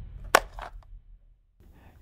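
Tail of an intro logo sound effect: a sharp click about a third of a second in and two fainter ticks after it, fading to silence and then faint room tone.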